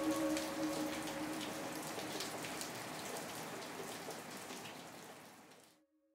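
Rain falling on wet pavement, with many separate drop impacts, fading out steadily to silence shortly before the end. A held music chord dies away under it in the first couple of seconds.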